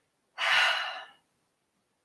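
A woman takes one deep, audible breath lasting just under a second, about half a second in.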